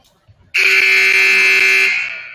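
Basketball scoreboard horn sounding one loud, steady blast of a little over a second, starting about half a second in, then cutting off and dying away in the gym's echo.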